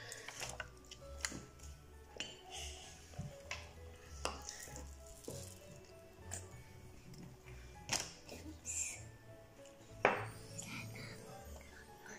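A metal spoon clinking and scraping against a glass mug and a ceramic bowl as a soft cream cheese mixture is scooped and spooned in: scattered sharp clinks, the loudest near the end.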